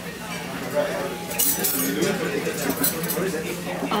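Dining-room clinks of metal cutlery and glassware against tableware, sharpest about one and a half seconds in and again near the end, over faint indistinct voices and a steady low hum.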